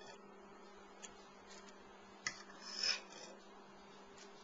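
A steady low electrical hum with faint handling sounds: a light click about a second in, a sharper click just after two seconds, and a brief scraping rustle near three seconds.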